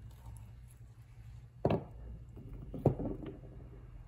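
Two sharp knocks about a second apart as cut geode halves are handled and set down, over a low steady hum.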